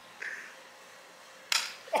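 A BB gun fires once: a single sharp pop about one and a half seconds in, fading quickly.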